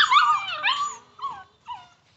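American Pit Bull Terrier puppy whining in a quick run of high, gliding calls, loudest in the first second, then a few fainter whines.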